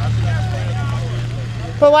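Steady low engine hum from cars and a pickup queued on a wet road, with faint voices in the background.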